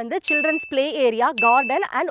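Two short, high ding sound effects about a second apart, each a steady bright tone cut off abruptly, laid over a woman talking.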